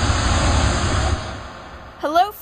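Rocket-launch sound effect: a rushing noise over a deep rumble, dying away over the last second.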